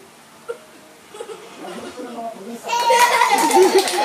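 Faint voices, then about two-thirds of the way in a sudden loud burst of laughter and excited talk from a family group, with a toddler's voice among them.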